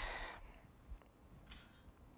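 A metal square cookie cutter pressing through and lifting off a slightly dry sheet of fondant on a stone countertop. It is mostly quiet, with a faint click about a second in and a brief scrape about a second and a half in.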